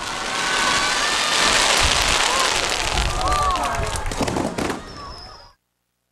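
Fireworks bursting: a dense crackle with a couple of low booms, then a sharp crack near the end. It fades and cuts off suddenly about five and a half seconds in.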